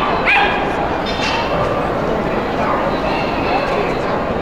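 A dog yipping and whining in two short, high-pitched calls, the first rising sharply about a quarter second in and the second a thin whine about a second in.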